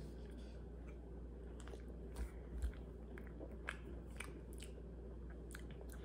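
Faint chewing and biting on a firm gummy candy, with a scatter of short, soft mouth clicks at irregular intervals over a low room hum.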